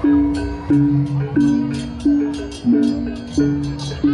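Balinese baleganjur processional gamelan playing: pitched gong notes struck about every 0.7 s, with rapid clashing hand cymbals (ceng-ceng) and barrel drums (kendang) over them.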